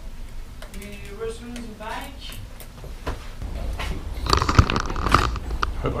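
Faint voices, then a stretch of rustling and knocks with low rumble about four seconds in: handling noise of the camera being picked up and moved.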